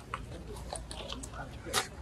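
Scattered small clicks and scrapes of hands opening a motorcycle tool-kit tube that is made to look like an exhaust.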